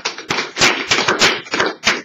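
A group of people clapping, loud, with many claps close together.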